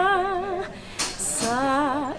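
A woman singing unaccompanied in an operatic soprano style: a held note with wide vibrato, a quick breath about a second in, then a new note.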